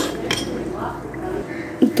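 A metal utensil clinking and scraping lightly against a metal cooking pot of chicken korma, with one sharper clink about a third of a second in.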